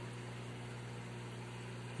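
Goldfish aquarium equipment running: steady bubbling water from the aeration with a constant low electric hum from the pump.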